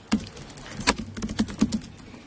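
Typing on a laptop keyboard: an irregular run of about ten quick key clicks.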